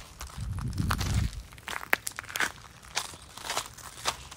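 Footsteps crunching on a gravel driveway, irregular crunches and scrapes, with a low rumble on the phone microphone during the first second or so.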